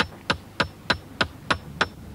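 A hammer drives a nail through the metal fitting into the wooden shaft of a log driver's pike pole (flottarhake) that is being repaired. The blows are steady and even, about three a second, and each has a short metallic ring.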